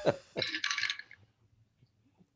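Brief laughter, a short breathy laugh in the first second, then near silence.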